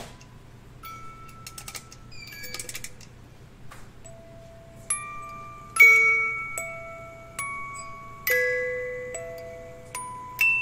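Figurine music box playing a slow tune of single chiming notes, each ringing out and fading. The notes are faint at first, with light clicks and rattling, and become clearly louder about five seconds in.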